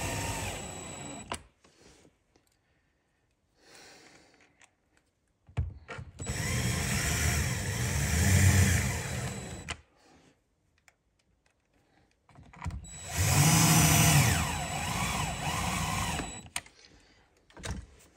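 Cordless drill/driver running in three short runs as it drives screws into a boat radio's mounting case in the dash panel, driven gently so the plastic doesn't crack. The first run stops about a second and a half in, the second runs from about six to ten seconds, and the third from about thirteen to sixteen seconds.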